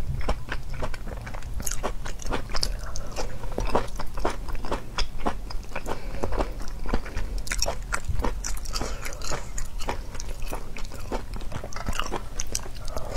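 Close-miked chewing and biting of firm raw shellfish slices: crisp, wet crunches and mouth clicks, several a second and irregular throughout.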